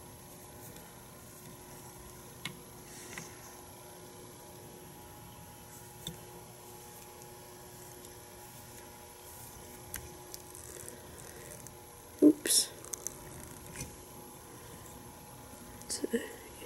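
Quiet small-room tone with a faint steady hum and a few faint ticks from hands working thread and dubbing on a fly in a tying vise. About twelve seconds in comes one short, much louder sound.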